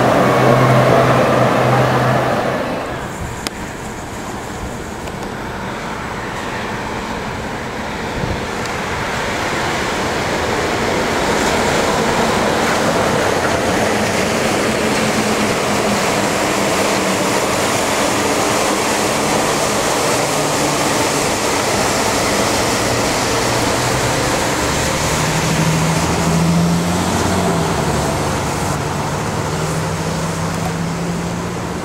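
Walt Disney World monorail trains running on the elevated concrete beam: a steady rush from the rubber tyres on the beam, with a low electric-motor hum that comes in near the end as a train passes close by.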